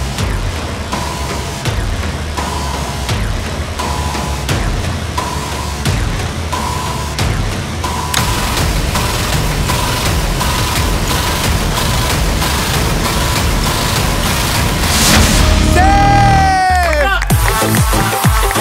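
Tense game-show background music with a steady beat and a short beep repeating about every second and a half. Near the end a falling swoop sound effect leads into upbeat dance music.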